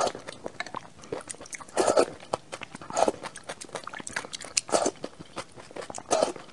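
Close-up eating sounds: a mouthful of soft, wet, eggy food taken from a wooden spoon and chewed, with constant small wet mouth clicks and louder smacking bursts at the start, around two and three seconds in, and just before five seconds.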